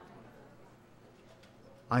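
Faint, steady background hiss. A man's voice begins right at the end.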